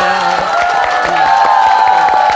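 Studio audience clapping and cheering, with a long, high, held voice over the clapping.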